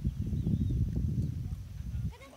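A person laughing close to the microphone, a low, rapid, breathy chuckle.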